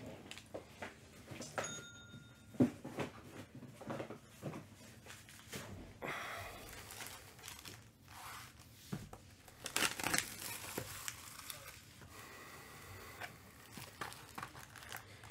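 Foil trading-card packs and cellophane wrap crinkling and rustling as they are handled, with scattered light taps and a few denser bursts of crinkling.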